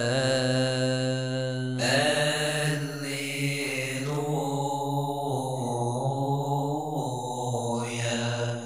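A voice chanting a long, wordless melismatic vowel over a steady low drone, drawing out the close of a psalm in Arabic liturgical chant, with a fresh breath and phrase about two seconds in.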